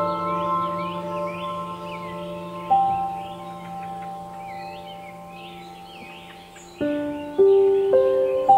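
Background music: a slow ambient piece of ringing, bell-like notes that hold and fade away. A new note is struck about three seconds in, and a cluster of notes comes near the end. Birdsong chirps throughout.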